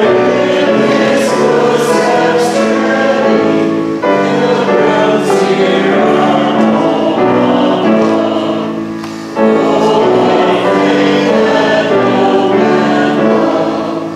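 Choir singing sacred music in long, held phrases. The singing fades and a new phrase begins about nine seconds in, with a brief break about four seconds in.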